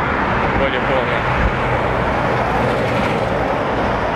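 Steady noise of city road traffic, with no single vehicle standing out.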